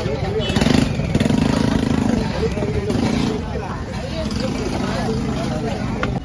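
Voices of people talking over a motor vehicle engine that runs with a steady low hum. The engine grows louder in several short stretches.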